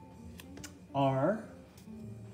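Soft acoustic guitar background music, with a few light taps as a paper letter card is set down on a wooden table. About a second in comes a brief, louder sound of a person's voice that rises in pitch at its end.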